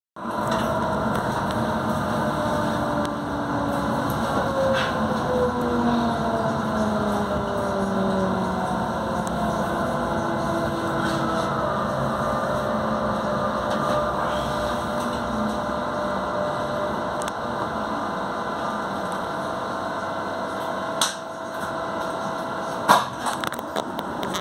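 Inside a Renfe Series 447 electric multiple unit slowing through a station: several whining tones from the traction equipment fall in pitch over the first twelve seconds or so, then settle into a steadier running hum. Two sharp knocks come near the end.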